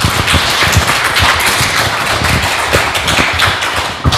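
Audience applauding: loud, dense clapping that eases slightly near the end.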